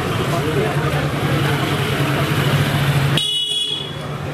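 Street ambience: people talking over one another against a steady low hum of vehicle engines. Near the end the background cuts out abruptly and a short, high-pitched electronic beep sounds.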